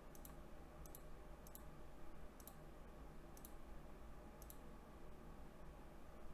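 Faint sharp clicks, each a quick double, about once a second for six clicks, stopping about four and a half seconds in, over a low steady hum.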